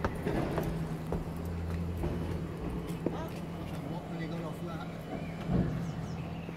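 A steady low mechanical hum, with scattered short knocks and faint voices over it.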